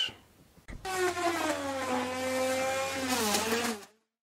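A power tool's electric motor running at speed, starting abruptly about a second in, its pitch sagging slightly and then dropping as it winds down before cutting off suddenly.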